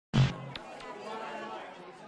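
A short, loud voice sound right at the start, then faint chatter of voices in the background.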